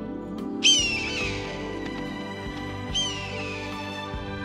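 Soft background music with two sharp, high bird calls over it, one just over half a second in and a second, quieter one about three seconds in, each arching up and falling away.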